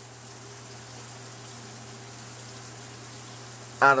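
Steady background hiss with a constant low hum, unchanging throughout, with no distinct event.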